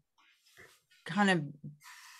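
A woman speaking through a video-call microphone: a short pause, then the words "kind of", followed near the end by a brief breathy hiss.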